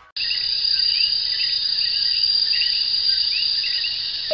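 Crickets trilling in a steady, high-pitched chorus that cuts in suddenly just after the start, with fainter repeated chirps beneath it.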